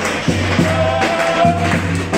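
Wedding dance music playing loudly: a pulsing bass beat under a long held melody line.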